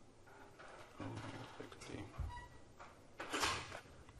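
Indistinct handling and movement noises: scattered rustles, a low thud a little past two seconds in, and a louder half-second rustle or scrape near the end.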